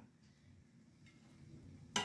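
Faint room tone, then a single short sharp click near the end as wooden chopsticks knock against a metal frying pan.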